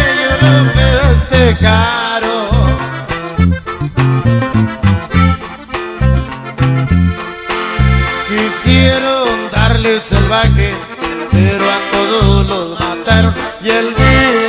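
Norteño corrido band playing an instrumental passage: accordion carrying the melody over strummed bajo sexto and short bass notes in a steady bouncing two-beat rhythm.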